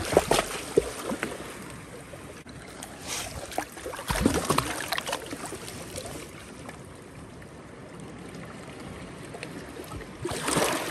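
Shallow water trickling and lapping, with a few splashes and knocks in the first half and an even wash of water after that.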